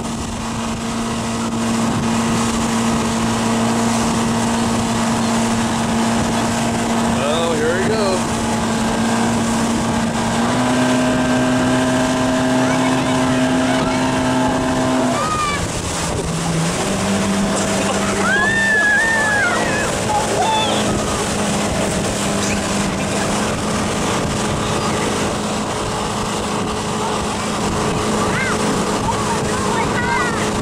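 Motorboat engine running steadily while towing, over wind and water noise; its note steps up about ten seconds in, then drops around fifteen seconds and settles lower. A few short shouts rise over it.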